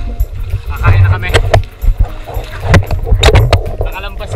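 Hands paddling and splashing river water beside an inflatable paddleboard, heard close on an action-camera microphone with a heavy low rumble and several sharp splashes.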